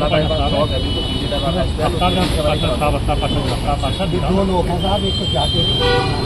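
Several men talking over one another, with a steady low rumble underneath.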